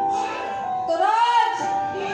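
A woman singing into a microphone over accompanying music, with held notes that slide up and down in pitch.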